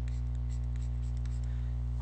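Light scratching of a stylus drawing short strokes on a drawing tablet, over a steady low electrical hum.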